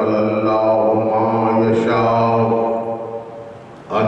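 A man's voice intoning Arabic in a long, drawn-out melodic chant, holding each note. The voice drops away briefly for a breath near the end, then comes straight back in.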